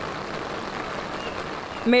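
Steady hiss of rain falling, even and unbroken.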